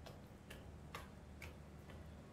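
Faint, evenly spaced ticks, about two a second.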